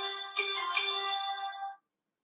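A short electronic tune of a few held notes, like a phone ringtone or alert chime, with new notes starting about a third of a second and three quarters of a second in, cutting off abruptly near the end.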